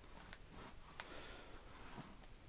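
Faint paper rustle and two light clicks from hands handling the pages of a hardback book, the second click followed by a short rustle.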